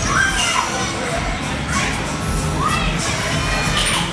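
Background din of children shouting and playing, with several short high-pitched shouts rising above a steady crowd noise.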